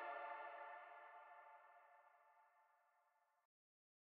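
The last sustained synth chord of an electronic house track dying away, fading to near silence about two seconds in.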